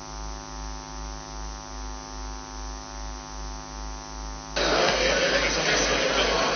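Steady electrical mains hum on the audio feed, swelling and fading about twice a second. About four and a half seconds in, louder noisy room sound with indistinct voices cuts in suddenly.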